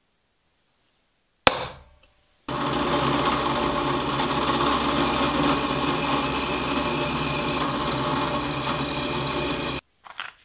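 A single hammer strike on a center punch against the steel blank, ringing briefly, then a drill press boring a pin hole through hard circular-saw-blade steel, running steadily for about seven seconds before cutting off suddenly near the end.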